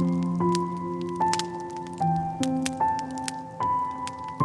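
Slow, soft piano music, a new note or chord about every half second, over the crackling and popping of a wood fire.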